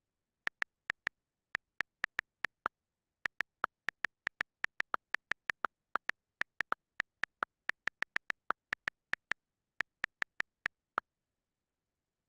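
iPad on-screen keyboard key clicks as text is typed: an uneven series of a few dozen short, sharp ticks of the same pitch with silence between them, stopping near the end.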